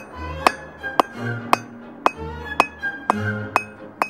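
Hand hammer striking 3/8-inch steel round stock on an anvil, about two blows a second, each with a bright metallic ring. Background music with low notes plays underneath.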